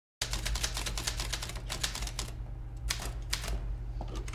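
Manual typewriter being typed on: a quick run of key strikes, then slowing to a few single strokes in the second half.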